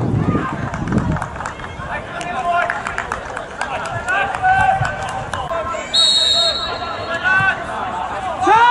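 A referee's whistle blown once, a short steady blast about six seconds in, signalling the second-half kick-off. Players' shouts and voices run around it.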